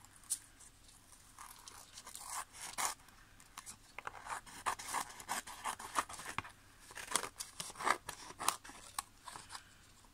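Scissors snipping through paper glued onto a card, trimming the excess along its edge: a string of short, irregular cuts that come thick and fast from about a second and a half in.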